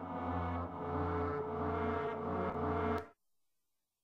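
The CS Drafter software synthesizer holding a sustained, slowly pulsing drone-like patch with many layered tones, which cuts off abruptly about three seconds in.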